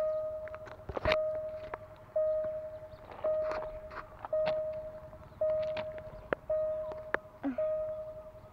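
Railway level-crossing warning bell ringing in a steady rhythm, one ding about every second, each fading before the next. The crossing is still signalling after a train has passed. A few sharp clicks sound over it, the loudest about a second in.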